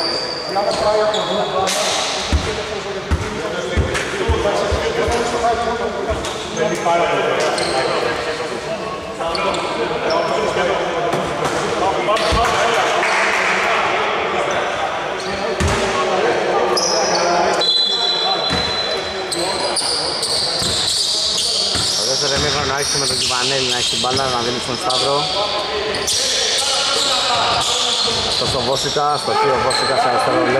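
Basketball bouncing on a wooden indoor court during a game, with a few sharp bounces, amid players' indistinct voices.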